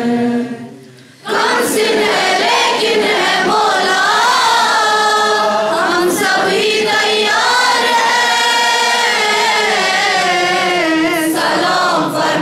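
A congregation of mourners singing a devotional lament in unison, in the style of a nauha or salam. The voices break off briefly just after the start, then resume and carry on steadily.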